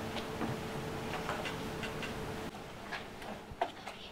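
Faint, irregular ticking clicks over a low steady tone that stops about halfway through.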